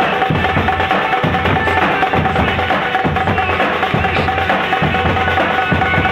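Street drums beaten with sticks in a fast, driving rhythm. A steady high tone runs underneath the drumming.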